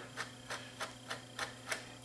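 A screwdriver turning out a screw from a DAT tape transport, giving light, evenly spaced clicks about three times a second, over a faint steady hum.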